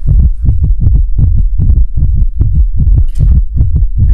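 A loud, deep bass pulse in a fast, even rhythm, several thuds a second: an edited-in dramatic beat of the heartbeat kind, laid under the scene.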